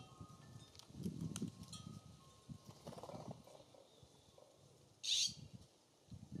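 A single short, harsh, raspy bird call about five seconds in, typical of a California Scrub-Jay, over low rustling and knocking at the feeders.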